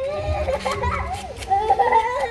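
High-pitched young children's voices calling out excitedly as they play, loudest near the end.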